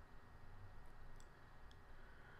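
Near silence: faint room tone with a few faint clicks near the middle.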